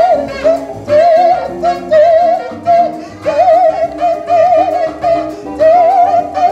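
Live jazz combo of saxophone, guitar and bass playing a swing ballad. A single wavering lead melody with vibrato runs in short phrases over guitar chords and a walking bass.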